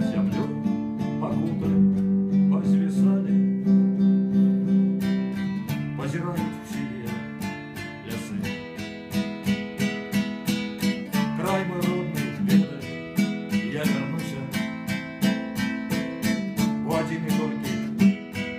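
Classical acoustic guitar with a slotted headstock, strummed in a steady rhythm of chords.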